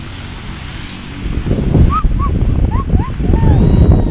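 Wind buffeting the camera microphone, rumbling and gusting louder from about a second in, with several short rising-and-falling high calls over it in the second half.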